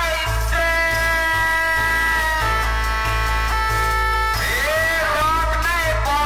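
Loud DJ dance music played through a large truck-mounted speaker system, with a heavy steady bass. Above it a high melody holds long notes, moves in short steps around the middle, and turns into a wavering, bending line near the end.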